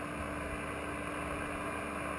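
Steady static hiss from a shortwave receiver's speaker on the 8.992 MHz military HF voice channel, with a faint steady low tone under the hiss.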